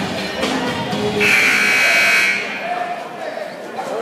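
Gym scoreboard horn sounding once, a steady buzz of about a second, over crowd chatter in the gym.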